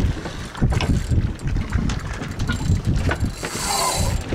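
Spinning reel on a bent carp rod being worked against a hooked tuna, its gears and mechanism clicking in short bursts, over wind buffeting the microphone. A higher hissing buzz comes in near the end.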